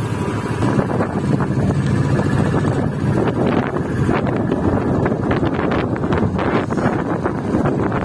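Royal Enfield Classic 350's single-cylinder engine running at low speed, with wind noise on the microphone. From about three seconds in, a spell of short crackles and knocks rides over the engine for several seconds.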